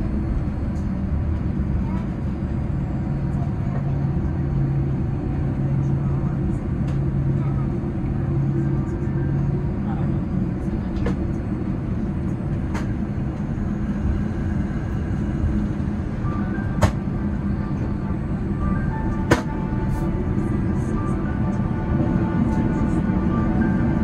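Cabin noise of a Boeing 787-9 taxiing after landing: the steady low rumble of its engines at taxi power and the airframe rolling, with a held low hum in the first half. Two sharp clicks stand out about seventeen and nineteen seconds in.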